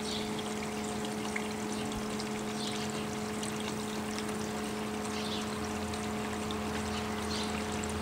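A steady, even hum with a continuous rushing sound like running water underneath it.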